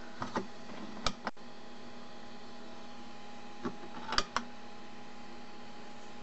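Steady electrical hum with a handful of sharp plastic clicks scattered through it, from an RC transmitter's switch and sticks being worked.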